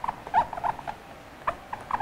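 Dry-erase marker writing on a whiteboard, squeaking in short, uneven chirps with each stroke.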